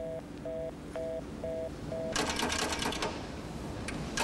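Payphone handset tone after the call is cut off: five short two-tone beeps, about two a second. Then a second of rapid clattering clicks from the payphone's hook being worked, with more starting near the end.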